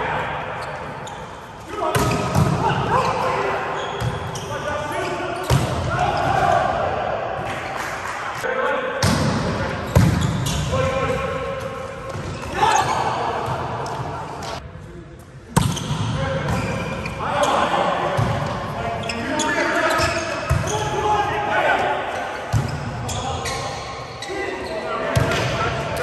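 Indoor volleyball being played in a large, echoing gym: sharp hits of hands on the ball and the ball striking the floor, mixed with players' shouts and chatter.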